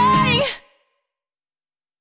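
The last note of an acoustic band performance: a breathy sung vocal note over acoustic guitar. It fades quickly about half a second in, leaving silence.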